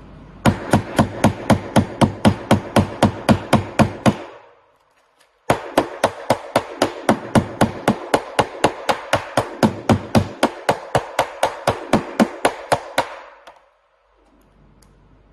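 A hard object striking a phone screen covered by a UV-cured film hardened to 5H, in rapid even blows of about five a second, testing the film's hardness. The blows come in two runs with a short silent break between them.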